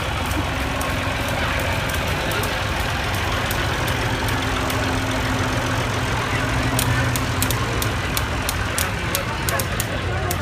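Farm tractor engine running slowly at a steady low hum as it tows a parade float past close by, with light sharp clicks in the last few seconds and people chattering behind.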